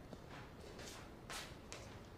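Faint soft footsteps, short scuffing steps about two a second, as a person walks across a room.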